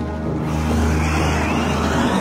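Background music over an Arrma Mojave 6S RC desert truck passing close by. From about half a second in, its brushless motor whines and its tyres throw up dirt and dry grass.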